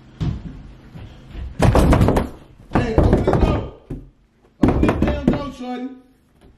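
Pounding on a closed door in four loud bouts of rapid blows. A voice shouts over the last bout.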